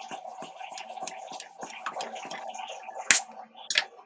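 Hand pump inflating a bicycle tyre: a run of small irregular clicks over a faint steady tone, then two sharp clicks, one about three seconds in and one near the end.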